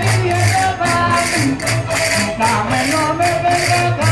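Portuguese folk band playing a lively dance tune, accordions carrying the melody over guitars and a bass drum, with bright jingling percussion keeping a fast, even beat.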